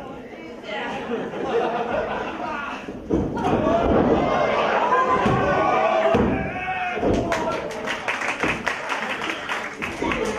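Pro wrestling ring action in a hall: wrestlers' and spectators' shouts and yells with thuds of bodies on the ring mat, followed by a quick run of sharp claps in the last few seconds.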